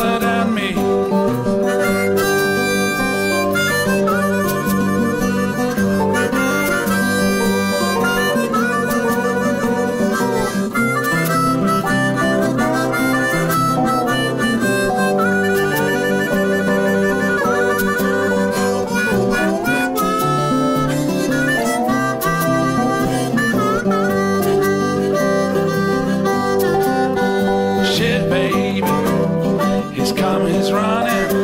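Blues harmonica solo with bent notes over acoustic guitar accompaniment, an instrumental break in the song.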